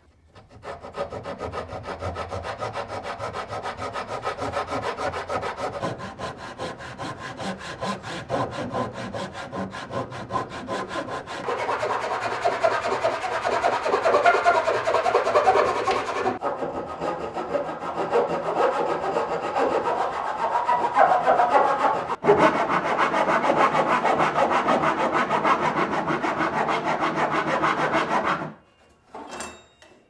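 Saw cutting through a painted wooden cabinet foot, trimming it along a scribe line so the cabinet sits to the floor. The sawing is continuous and grows louder partway through, with brief pauses, stops about two seconds before the end, and is followed by a couple of light knocks.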